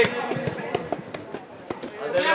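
Indoor football play on artificial turf: a string of short sharp knocks, several a second, from players' running footsteps and ball kicks, under faint distant voices in the hall.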